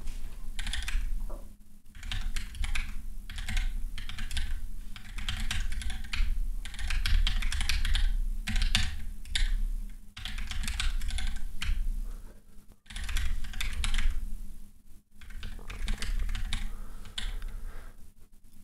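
Rapid typing on a computer keyboard, in several runs of keystrokes separated by short pauses.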